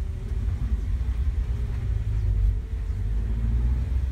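A car driving along a rough road, heard from inside the cabin: a steady low rumble of engine and road noise.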